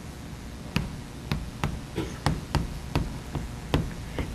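Chalk tapping and knocking on a blackboard as a formula is written: about seven sharp, irregular taps over a few seconds.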